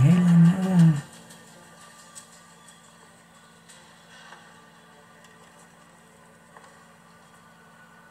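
Film soundtrack played back on a laptop: a loud, wavering voice-like sound lasting about a second, then a quiet stretch of faint low hum with a few soft ticks.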